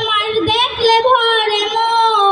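A young girl singing solo through a microphone and PA loudspeakers, holding long notes.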